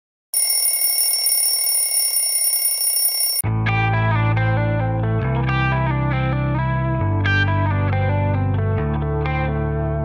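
A steady, high ringing sound effect lasting about three seconds, followed by instrumental background music with plucked, guitar-like notes over low bass chords that change every couple of seconds.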